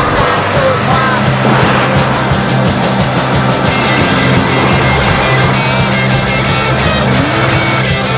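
Rock music, with a car's engine mixed in under it, its pitch rising and falling as the car takes a bend.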